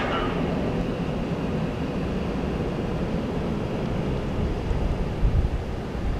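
Low, steady rumble of a passing 639-foot Great Lakes bulk freighter in the canal, mixed with wind buffeting the microphone in uneven gusts, a little stronger near the end.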